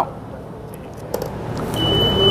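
Faint handling of a paper seal strip on a plastic EVM control unit, with a couple of light clicks over a low steady background hum. A high, steady electronic beep begins near the end.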